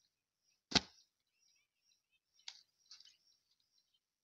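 A lump of wet mud thrown into a wooden brick mould, landing with one heavy thud a little under a second in, followed by a few fainter slaps as the mud is worked into the mould by hand.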